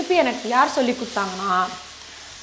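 A woman's voice talking, the loudest sound, over the faint sizzle of raw-mango thokku frying in a kadai as a ladle stirs it. The voice stops just before the end, leaving the sizzle.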